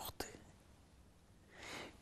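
Quiet pause in a man's speech: a couple of short mouth clicks at the start, then a soft, breathy in-breath near the end.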